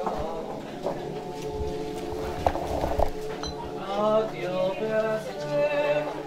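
A choir singing a traditional popular song in harmony: several voices hold notes together, and their pitches bend and move after about four seconds. Two short knocks sound about halfway through.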